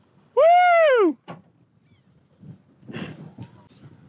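A man's excited whoop, "Woo!", under a second long, rising and then falling in pitch, let out as a hooked tarpon leaps and splashes.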